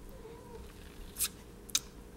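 Two short, sharp mouth clicks from a man's lips about half a second apart, over quiet room tone.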